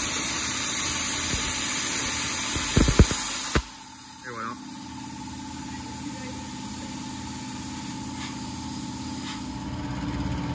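Tauro CNC plasma cutter's torch cutting steel sheet with a loud steady hiss, a couple of sharp knocks near three seconds, then the arc cutting off abruptly at about three and a half seconds as the cut finishes. A quieter steady machine hum carries on after it.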